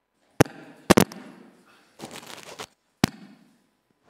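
Handheld microphone being handled as it is passed to an audience member: sharp knocks and bumps about half a second in, a double knock near one second, and another about three seconds in.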